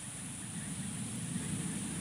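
Outdoor ambience with no distinct event: a steady high-pitched insect drone over a low rumble that grows slightly louder.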